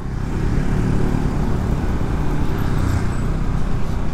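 Motor scooter riding along a street with traffic: a steady engine hum under road and traffic noise.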